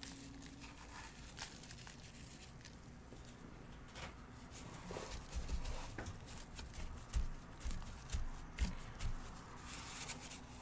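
Faint rustling and crinkling of plastic-gloved hands sprinkling dried lavender buds onto a sugar-coated candle and rubbing them in, with scattered small clicks. Several soft low thumps come in the second half as the hands press on the candle and tray.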